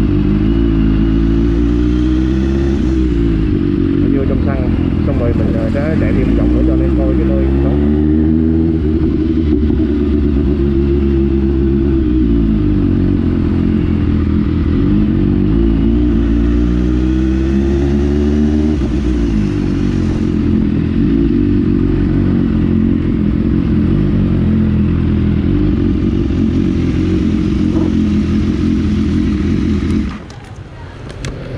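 BMW S1000RR's inline-four engine running under way at low speed. The revs climb and fall back several times in the first twenty seconds as the bike pulls away and eases off, then hold steadier.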